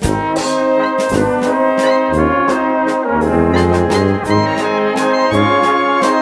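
A traditional Czech brass band playing a waltz, with full brass melody and harmony over a recurring bass line. It comes in at full volume right at the start.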